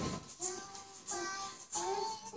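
A children's nursery-rhyme song playing, a child's voice singing a simple melody over a steady beat with a light high percussion tick about three times a second.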